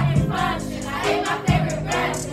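A group of children singing a song together in unison over a backing track with a steady bass line.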